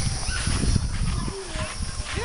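Wind buffeting the camera microphone in a steady rumble, with a few brief high cries over it.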